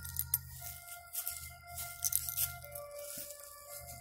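Faint, distant music of long held notes at several pitches, coming in one after another, carried from military sounds in the distance. Light rustling and crunching of undergrowth runs under it.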